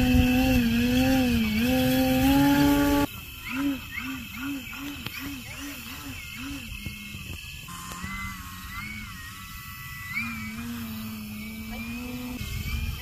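Radio-controlled model aircraft in flight, its motor and propeller making a steady whine that wavers in pitch with the throttle. About three seconds in, it drops sharply in level. It then swells and fades in a quick rhythm about twice a second, before settling into a steadier hum with a higher whine over it.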